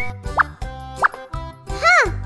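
Cartoon sound effects over children's background music with a steady beat: two short rising 'plop' blips about half a second and a second in, then a louder sweep that rises and falls near the end.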